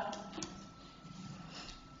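Quiet room tone in a meeting hall, with a faint steady high tone running through it and a small tick about half a second in.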